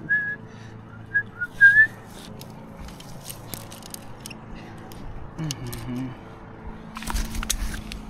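A person whistling a few short notes, some sliding up in pitch, in the first two seconds. After that come scattered clicks of climbing gear against the tree, with a burst of clinking and rattling about seven seconds in.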